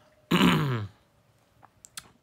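A man clearing his throat once: a short, loud, rasping sound that falls in pitch, about a third of a second in. A few faint clicks follow near the end.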